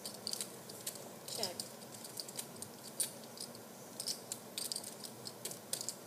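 Clay poker chips clicking as a player handles and fiddles with his stacks: small, sharp clicks at an uneven pace throughout, over a faint steady hum.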